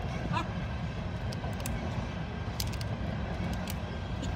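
Faint small clicks and crackles of broken parts being picked at in a smashed phone, over a steady low rumble.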